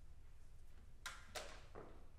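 Faint handling noise from a twelve-string acoustic guitar being picked up and strapped on, with three short knocks starting about a second in, over a low steady hum.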